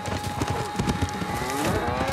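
A bull bellowing as it charges across a dirt arena, with the low thud of its hooves.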